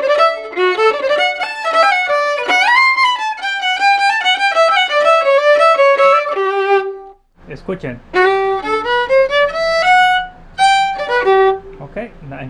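Solo Huasteco-style violin playing a quick, ornamented huapango phrase. It breaks off for a moment about seven seconds in and starts again with a low hum underneath and a different room sound.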